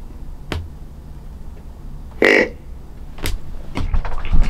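A deer grunt call blown once: one short, loud grunt a little over two seconds in, a hunter calling to a buck. A couple of faint clicks around it.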